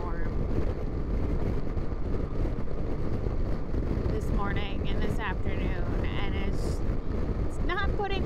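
Steady rush of wind and road noise from a 2021 Yamaha FJR1300 motorcycle at highway speed.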